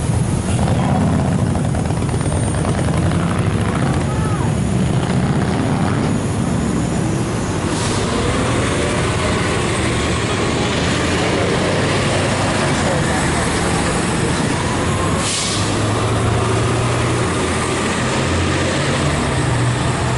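City bus engine running close by with a deep steady rumble, its pitch rising as it pulls away; a short hiss about fifteen seconds in.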